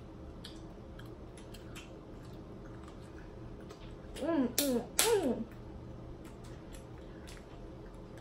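Scattered small clicks and crackles of hands peeling shrimp and handling food at a table, with a loud, brief vocal outburst of a few rising-and-falling syllables a little past halfway.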